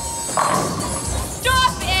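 Bowling ball crashing into the pins about half a second in, a strike, over background music; a man starts to shout near the end.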